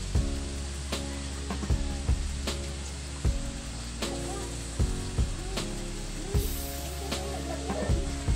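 Vegetables frying in a wok on a portable gas stove, with a metal spoon clicking against the pan now and then, under steady background music.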